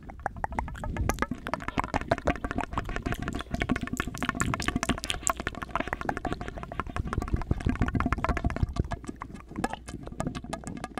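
Close-up ASMR trigger sounds at a binaural microphone, several layered together: a dense, irregular run of quick clicks and taps with wet mouth sounds through a plastic tube, over a faint steady tone.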